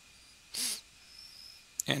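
A person's short, sharp breath, a sniff, about half a second in, against a quiet room; a man starts speaking near the end.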